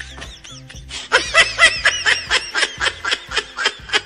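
Hard, high-pitched laughter in a rapid run of short 'ha' bursts, about five a second, starting about a second in, over background music with a low bass line.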